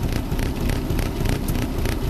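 A vehicle engine running, heard from inside the cab as a steady low rumble, with irregular faint crackling clicks over it.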